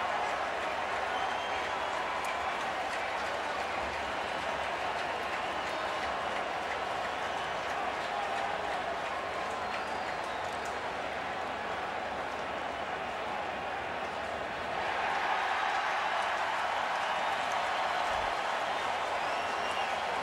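Baseball stadium crowd: a steady wash of many voices and scattered applause, growing a little louder about three-quarters of the way through.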